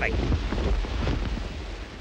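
Wind sound effect: a steady rushing with a low rumble that fades away toward the end as the wind dies.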